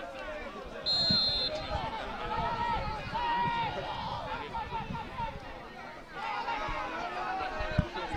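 Voices shouting around a football pitch, with one short, high whistle blast about a second in.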